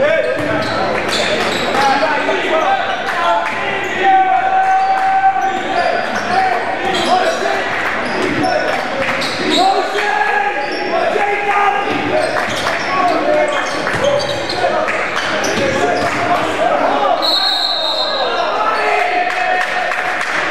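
Live basketball play on a hardwood gym floor: a basketball bouncing as it is dribbled, with short sharp knocks and squeaks from play, and players and spectators calling out, all carrying in a large hall.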